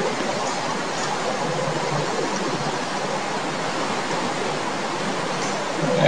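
Steady, even hiss of background noise, unchanging throughout.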